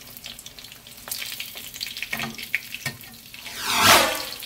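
Egg rolls shallow-frying in corn oil in a nonstick pan: a steady crackling sizzle with scattered small pops and clicks. Near the end the sizzle swells into a loud rush.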